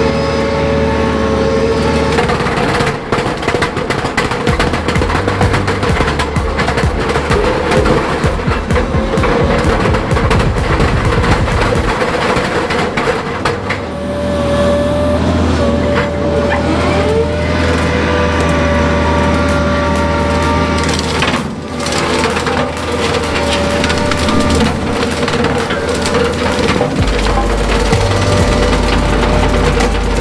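Background music laid over a hydraulic brush mower on a Bobcat Toolcat running against a tree trunk, with wood cracking and splintering as the tree is pushed over.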